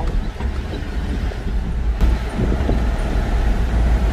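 Steady low engine and road rumble inside the cab of a moving vehicle.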